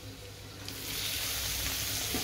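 Paneer cubes sizzling in hot oil and spices in a kadai. A steady hiss comes in suddenly about two-thirds of a second in, as the paneer meets the oil.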